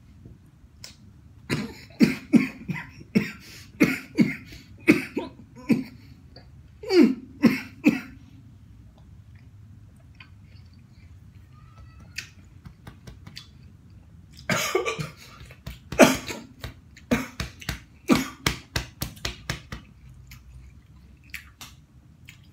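A man coughing after choking on watermelon: a run of short, sharp coughs about twice a second, a pause, then a second bout of coughing.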